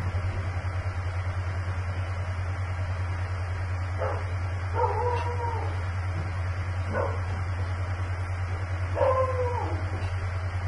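A dog in the car whining and yipping about four times, starting about four seconds in, two of the calls longer and bending in pitch. Under it runs the steady low hum of the car waiting at the lights.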